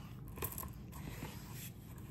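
Faint handling sounds: beads of a black-and-white beaded necklace softly clicking together and hands rubbing against a burlap necklace display bust as the necklace is laid out on it.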